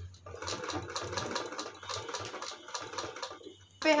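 Usha sewing machine stitching at slow speed: an even, rapid clatter of about six stitches a second over a low hum. It stops shortly before the end.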